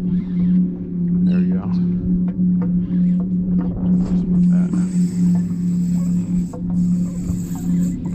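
A loud, steady mechanical hum from the fishing boat, holding one low pitch with overtones, with faint voices early on and a high hiss from about halfway through.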